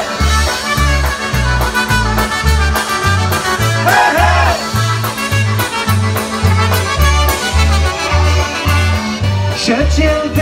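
A live polka band plays an instrumental passage. Concertina and accordion carry the tune over trumpet, drums and a bass line that alternates between two low notes on a steady oom-pah beat, about two notes a second.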